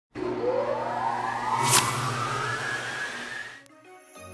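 Intro sound effect for a logo animation: a tone rising steadily in pitch over a steady low hum, with one sharp hit about halfway through. It fades away shortly before the end.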